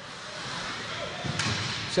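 Ice rink sound of live hockey play: a steady hiss of skates on the ice, growing slightly louder, with a sharp crack about one and a half seconds in.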